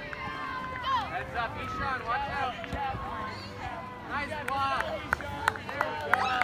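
Overlapping shouts and calls from players and spectators across a soccer field, several voices at once with no clear words, and a few sharp clicks near the end.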